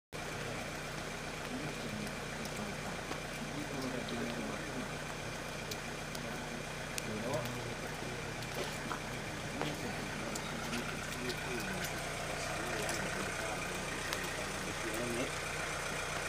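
Steady rain falling, with scattered drips and a steady low hum beneath it, and faint voices murmuring in the background.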